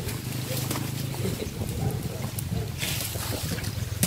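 A small engine running steadily at low revs, a low even rumble, with a brief hiss near three seconds in.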